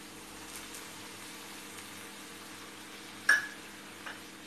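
Onion-tomato masala with water just added, sizzling faintly and steadily in a frying pan. A single sharp click about three seconds in.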